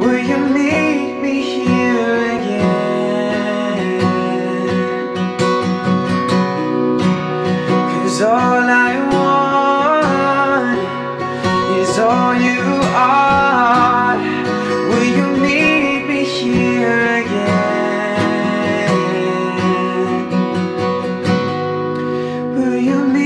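A man singing a slow song to his own acoustic guitar accompaniment, the guitar sounding steadily while his voice rises and falls through sung phrases.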